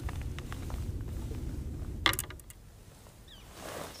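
Fishing reel being cranked to reel in a second trolling line, its gears running steadily for about two seconds.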